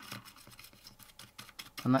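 Short stiff paintbrush, nearly dry, dragged repeatedly across the raised detail of a plastic model wagon: faint, scratchy bristle strokes.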